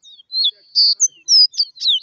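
Caboclinho (Sporophila seedeater) singing from a hand-held cage: a fast run of short, high whistled notes, many sliding down in pitch.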